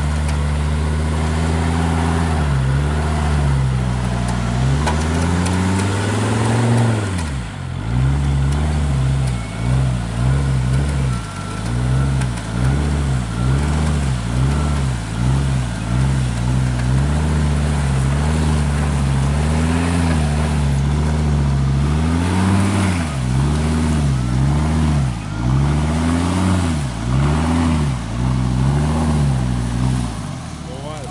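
Jeep Grand Cherokee engine under load as the SUV crawls through a muddy forest rut. It runs steadily at first, then about seven seconds in the revs start rising and falling about once a second as the driver works the throttle.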